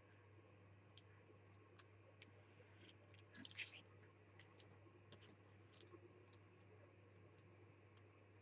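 Near silence: a steady low room hum with a few faint clicks, and a brief soft rustle about three and a half seconds in as cardstock and a plastic ruler are handled on a craft mat.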